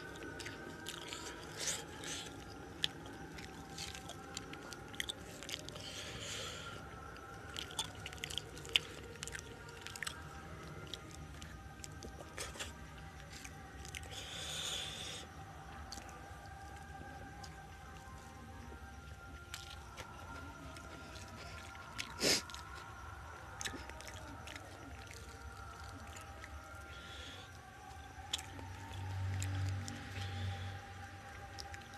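Close-up chewing and biting of chicken biryani and chicken, with many short crunches and clicks and one louder crack about two-thirds of the way in.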